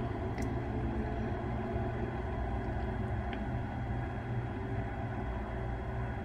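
Room tone: a steady low hum, with no other sound of note.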